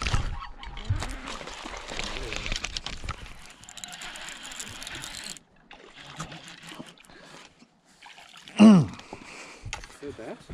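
Water splashing and sloshing for about five seconds, with a scatter of small clicks, then quieter rustling. Near the end comes a short, loud vocal cry that falls in pitch.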